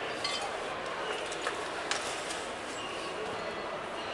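Indoor ambience of background voices with a steady hiss, broken by a few light clicks and clinks, the sharpest about a quarter second in and just before two seconds in.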